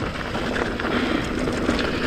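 Mountain bike descending a rough dirt and gravel trail at speed: continuous tyre noise on loose ground, with the bike rattling and clicking over the bumps.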